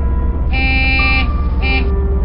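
A vehicle horn sounds twice, a long buzzy honk and then a short one, over background music with a steady low bass.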